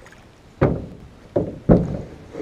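A wooden paddle knocking against an aluminium jon boat's hull while paddling. There are three sharp knocks, the last two close together.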